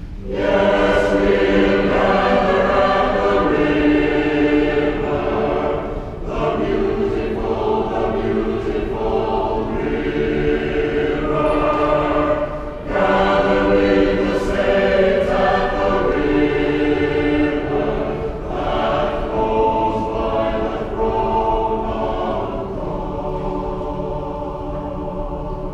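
Church choir singing, the voices holding long sustained notes, with short breaks between phrases about six and thirteen seconds in.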